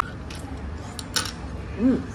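A few light clicks of chopsticks and a spoon against a bowl of noodle soup, over restaurant room noise; a brief voice comes in near the end.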